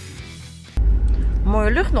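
Background guitar music that cuts off suddenly under a second in, giving way to a loud, steady low rumble of a car heard from inside the cabin while driving.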